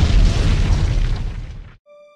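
Explosion-like boom sound effect: a loud blast that fades over more than a second and then cuts off suddenly, followed near the end by a steady electronic tone.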